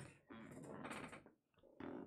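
Faint, stifled laughter: a soft stretch lasting about a second, then a brief burst near the end.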